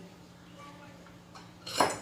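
A kitchen utensil clinks sharply once against cookware near the end, with a brief ring, after a couple of faint small knocks.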